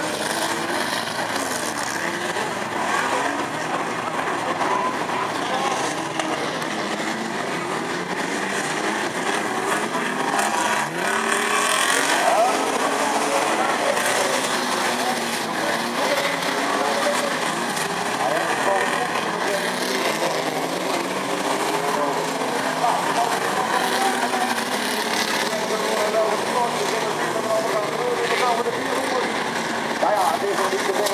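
Engines of banger racing cars running and revving on the track, under continuous talk and chatter from spectators close by.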